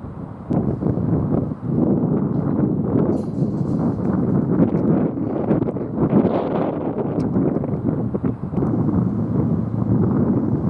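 Wind buffeting an outdoor microphone: a loud, uneven rumbling noise that surges and dips, with no engine note or horn standing out.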